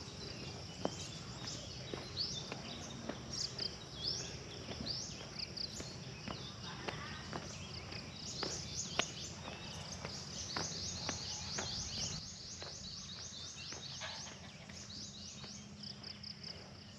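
Faint rural ambience: birds and insects chirping high and fast, in quick repeated series toward the middle, over a low steady background hum, with scattered soft clicks.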